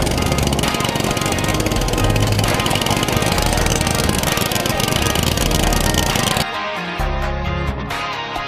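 Go-kart engine running hard with a rapid, buzzing firing, mixed with music. About six seconds in the engine sound cuts off suddenly, leaving only a guitar-led country song.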